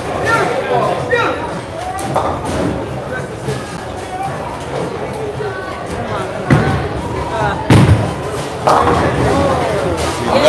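Bowling-alley impacts: a bowling ball thuds onto the lane and pins crash, with two sharp hits about six and a half and eight seconds in and a clatter after them. Voices in the hall run underneath.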